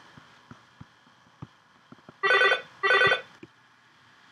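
Telephone ringing: two short rings, each about half a second long, a little over two seconds in. Faint clicks come before them.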